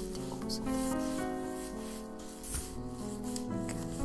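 Calm piano music with rubbing and scratching ASMR sounds layered over it in irregular short strokes.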